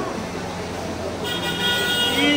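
A horn sounds steadily from a little past halfway, over the chatter of a crowd.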